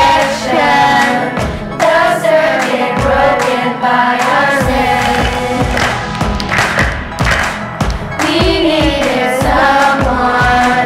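A children's choir singing a Christmas song to musical accompaniment. About halfway through a steady beat comes in and the singers clap along.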